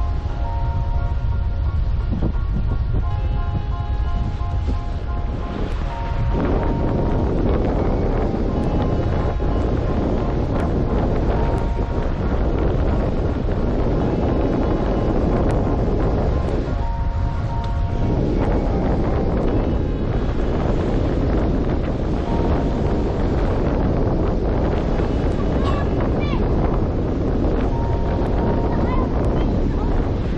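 Wind buffeting the microphone, a steady low rumble, with faint music underneath.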